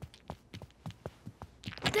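Quick, light footsteps of cartoon characters trotting on a carpeted floor: a run of soft, separate steps, about four to six a second.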